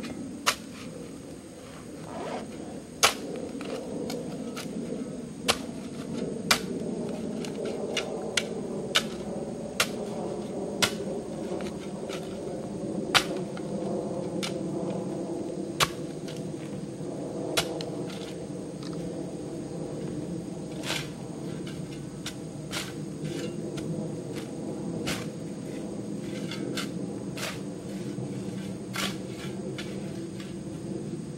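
A metal shovel working loose soil on an earth mound: sharp, irregular scrapes and strikes every second or two as earth is dug and shaped, over a steady low hum.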